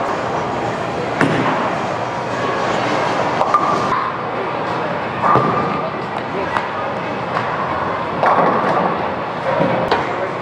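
Busy bowling alley: a bowling ball rolls down the lane, with sharp crashes of balls and pins a little over a second in and again around five seconds in, over a steady din of voices.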